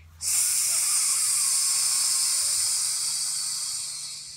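A woman exhaling in one long, steady "sss" hiss through her teeth, the forced exhale of an abdominal-breathing drill that pushes the air out; it tapers slightly toward the end.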